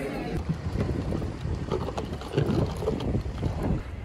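Wind buffeting the microphone over a steady low rumble, irregular and noisy throughout.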